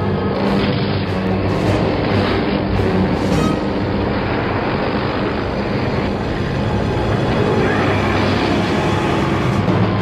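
Loud, dramatic orchestral film score with sustained low notes, over a dense rumble of vehicle noise and booming impacts.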